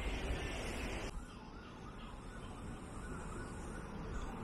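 Outdoor ambience: a steady hiss cuts off abruptly about a second in. A quieter background follows, with a faint high wavering tone that rises and falls over and over.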